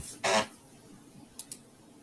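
A man's short breathy sound at the microphone, just after a hummed "hmm", followed by two faint clicks about a second and a half in.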